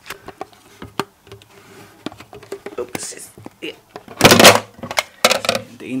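Plastic clicks and knocks of a Brita filter bottle and its lid being handled right by the microphone, with a loud rubbing noise a little past four seconds in.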